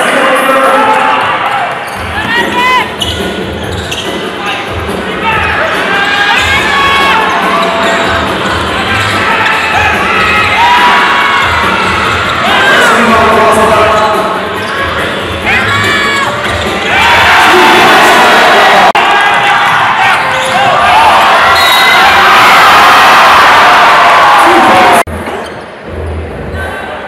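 Sounds of a live indoor basketball game: the ball bouncing on the court amid shouts from players and the crowd, with loud crowd noise from about two-thirds of the way in that cuts off suddenly near the end.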